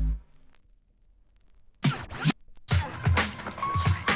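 Music from a vinyl record cuts off, followed by over a second of near silence, then two short scratchy bursts as the record on the turntable is handled by hand. A new white-label record then starts playing, a track with a steady, punchy beat.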